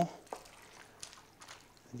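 A spoon stirring pasta, vegetables, sauce and stock in a metal roasting tin: faint wet squelching with a few light clicks of the spoon against the tin. A word of speech comes in at the very end.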